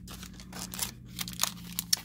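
Clear plastic stamp-set packaging crinkling in the hands, a run of irregular crackles as the package is handled and swapped for another.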